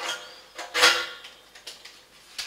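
Metal handling sounds from a BioLite CampStove's stainless-steel burn chamber as the plastic thermoelectric generator unit is fitted to it: a light knock at the start, a louder clank with a short ring a little under a second in, then a few small clicks near the end.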